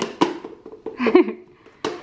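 A plastic container knocking against a blender jar as mango chunks are shaken out of it into the jar: a few sharp knocks near the start and one near the end. A short vocal sound comes about a second in.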